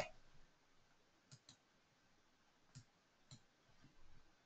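Near silence: faint room tone with four soft, short clicks, two close together about a second and a half in and two more near three seconds.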